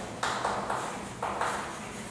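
Chalk writing on a chalkboard: a quick run of short scratching strokes and taps as a word is written out.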